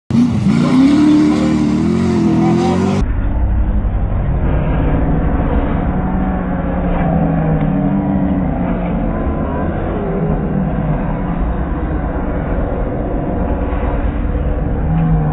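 Stock car engines running hard, one revving with a rising pitch. After about three seconds the sound turns duller and lower, with the engine drone over a steady low rumble, as it plays in slow motion.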